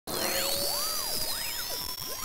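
Hiss of TV-style static noise, starting abruptly, with several swooping electronic tones gliding up and down over it.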